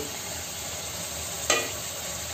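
Chicken pieces sizzling steadily in oil in a metal karahi on a low flame while being stirred with a wooden spatula, with one sharp knock of the spatula against the pan about one and a half seconds in.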